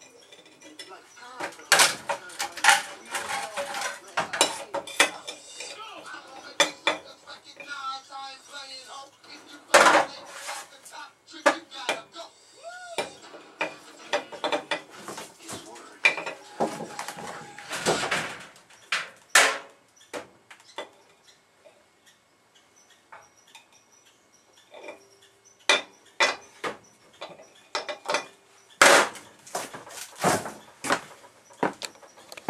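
Irregular sharp clacks and knocks of speaker magnets being handled against each other and a small CRT television's case and screen. The loudest clacks come about ten and eighteen seconds in, with a quieter stretch after twenty seconds.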